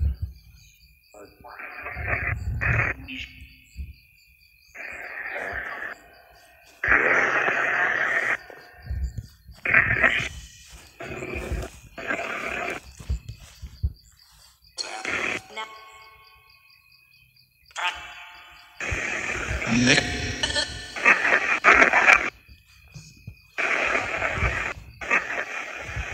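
Chopped fragments of voices and music from a ghost-hunting spirit box app, coming in short bursts of one to two seconds that cut on and off abruptly with gaps between them. A faint steady high whine runs underneath.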